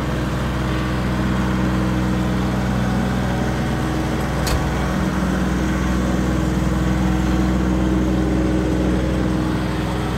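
Compact farm tractor's engine running steadily as it carries a loaded front loader, with one sharp click about halfway through.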